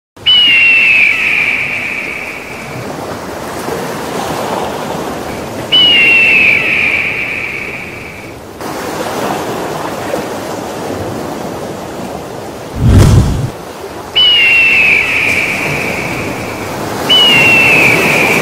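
A bird of prey's long, hoarse scream, four times. Each scream starts sharply high and falls slightly over a couple of seconds. Under it runs a steady rushing noise like surf, and a deep thump comes about 13 seconds in.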